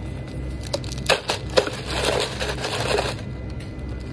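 A clear plastic lid being pressed onto a plastic cup full of ice: a few sharp plastic clicks, then about a second of crackling and crinkling as the lid is worked down.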